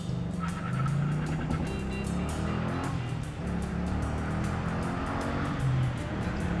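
2004 Pontiac GTO's LS1 V8 under hard acceleration from a standstill, with music playing underneath.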